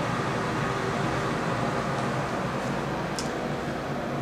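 Steady hiss of a running room air conditioner, with one faint short tick about three seconds in.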